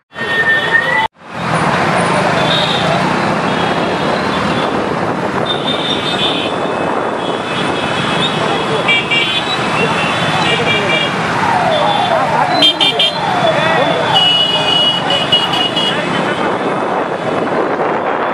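A large pack of motorcycles riding together, many engines running at once, with horns honking on and off over the din.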